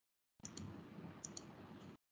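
Faint low background noise from an open microphone, with two pairs of small sharp clicks about half a second in and a little past a second in. The sound cuts in and out abruptly, as a call's noise gate does.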